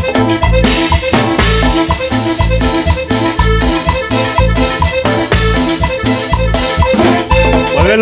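A live cumbia band plays an instrumental intro on keyboard, drum kit, electric guitar and bass guitar to a steady, repeating dance beat.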